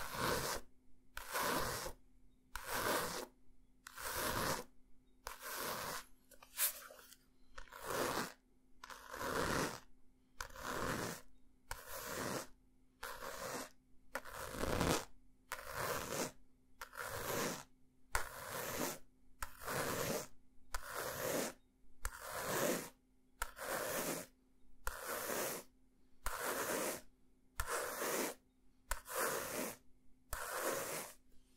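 Fingernails scratching a book cover close to the microphone, in regular short scratchy strokes about once a second.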